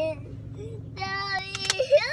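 A young boy singing, holding one long steady note from about a second in, then sliding up in pitch near the end.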